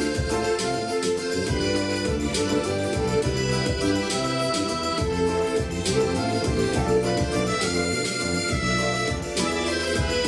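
Instrumental introduction of a song from a recorded backing track: a sustained melody over bass and accompaniment, with no voice yet.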